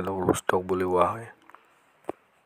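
A voice speaking for the first second or so, then near silence with a few faint clicks.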